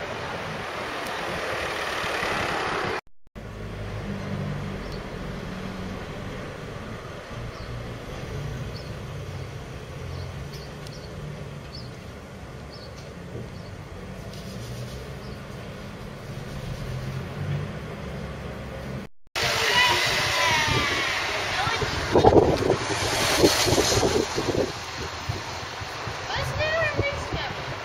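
Town-centre street sounds in three cuts: outdoor street noise, then a long stretch of a vehicle's engine running low and steady, heard from inside the vehicle as it drives, then street noise again with people's voices and a few louder bumps near the end.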